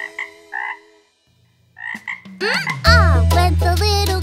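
Cartoon frog croaks: three short ones in the first second and one more about two seconds in, during a break in the music. Then the children's song with singing comes back in, about three seconds in.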